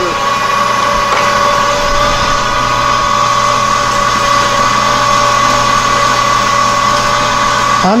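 Grizzly metal lathe taking a heavy cut in an 8620 steel gear forging: a steady whine from the lathe's drive over the noise of the cut, the machine working hard under the load.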